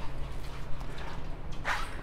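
Irregular gurgling of carbon dioxide bubbling out of a fermenter's blow-off hose into a bucket of liquid, a sign of active fermentation, over a steady low hum.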